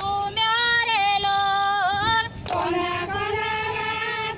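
A female voice singing a garba song in long held notes with slight bends in pitch, with a short break between phrases about two seconds in.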